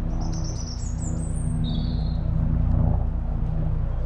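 Songbirds singing: a high, stepped phrase climbing over the first second and a half, then a lower phrase about two seconds in, over a steady low rumble and hum.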